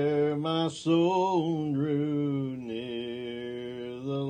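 A man singing a hymn solo and unaccompanied, in slow, long-held notes, with a brief break for breath a little under a second in.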